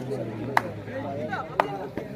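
Sharp smacks about a second apart, most likely players' hands slapping during a kabaddi raid, over the chatter of an onlooking crowd.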